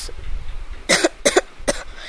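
A person coughing: three short coughs close together, starting about a second in.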